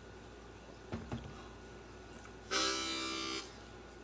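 A single short blues harmonica note, held steady for about a second, a little past halfway, before the song begins. Two faint knocks come about a second in.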